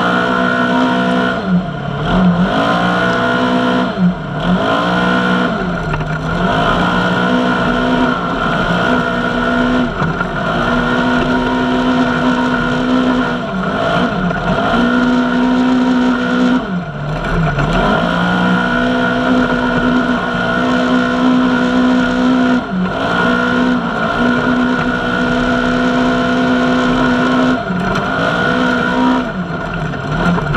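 Polaris RZR side-by-side's engine pulling along a rough trail, its pitch holding steady for stretches and dipping briefly then climbing back about ten times as the throttle eases off and comes back on, the dips closest together in the first few seconds.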